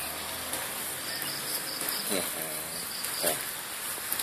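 Steady, high-pitched chorus of insects in the background, with a short faint voice about two seconds in.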